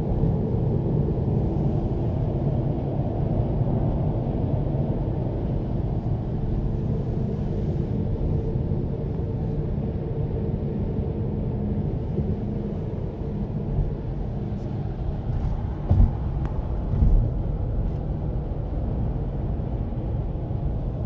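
Steady low rumble of engine and road noise inside a Kia car's cabin while it drives at motorway speed. Near the end there are two short thumps about a second apart.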